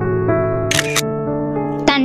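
Gentle electric-piano background music with sustained notes, overlaid with a short hissy, shutter-like sound effect about three-quarters of a second in and a sharp click just before the end.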